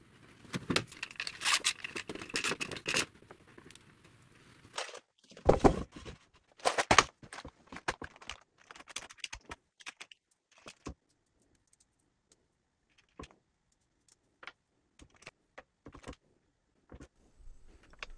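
Small metal hardware, T-slot nuts and screws, clinking and rattling as it is picked through in a plastic parts box: scattered sharp clicks with a couple of louder knocks, growing sparser toward the end. It opens with about three seconds of a louder, noisier workshop sound.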